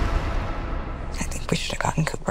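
A low steady rumble, then a whispered voice in short breathy bursts from about a second in.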